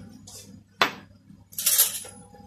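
Metal kitchenware being handled at a steel pot: one sharp clink about a second in, then a short, louder scraping rustle near the end.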